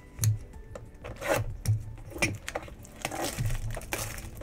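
Hands handling and tearing open a cardboard blaster box of trading cards: a run of sharp crinkles, rubs and light knocks as the wrapper and top are torn.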